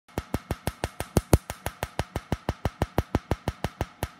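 Tattoo-removal laser firing pulses onto tattooed skin: a rapid, even train of sharp snaps, about six a second.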